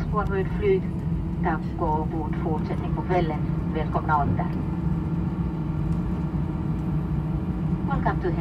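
Airbus A320 cabin noise while taxiing after landing: a steady rumble of the idling engines and cabin air with a steady hum. Voices talk over it for about the first four seconds.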